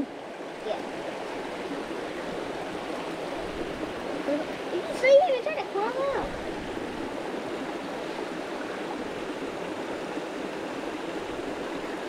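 Steady rush of a shallow rocky creek running over stones, with a short burst of voice about five seconds in.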